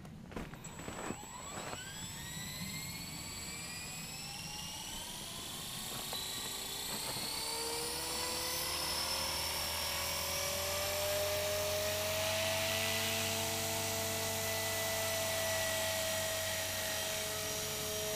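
Blade 300X RC helicopter's 440H brushless electric motor and rotor head spooling up: a whine that rises in pitch over the first several seconds, getting louder, then settles into a steady whine at stock head speed.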